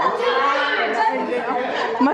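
Several people's voices talking over one another, a jumble of chatter in a large room.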